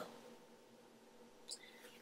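Near silence: room tone in a pause between spoken phrases, with one faint, short mouth noise about one and a half seconds in.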